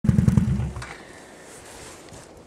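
Can-Am 650 ATV engine running loudly with a low pulsing beat for under a second, then dropping away abruptly, leaving only a faint background.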